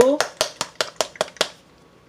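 A small squeeze bottle of sky blue food colouring shaken hard by hand, giving quick, even clicking strokes about five a second that stop about one and a half seconds in.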